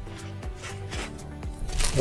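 Upbeat background music with steady held tones and light ticks. Near the end comes a brief crinkle of bubble-wrap plastic as the wrapped package is handled.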